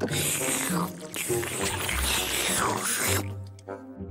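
Animated cat eating noodles greedily from a bowl: wet slurping and gobbling over background music, with the eating noise dying down a little after three seconds in.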